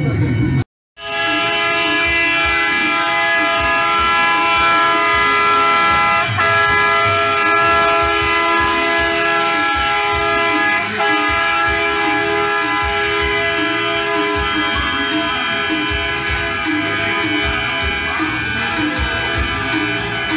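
Truck air horns held in one long, loud multi-note chord as the trucks roll past. It starts about a second in and holds steady, with only a few tiny breaks.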